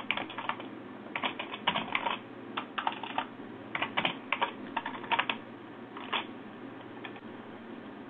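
Computer keyboard typing in short runs of quick keystrokes, with pauses between them, stopping about six seconds in.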